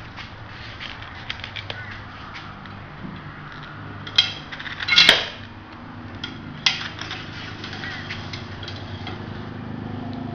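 A steel tape measure being handled and its blade drawn out along a copper condenser tube: scattered light clicks and knocks, with a sharp click about four seconds in, a louder rattling clatter with a metallic ring just after five seconds, and another sharp click shortly before seven seconds.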